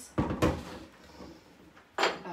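Two quick knocks a quarter-second apart as small metal card-catalogue handles are put down in a wooden drawer.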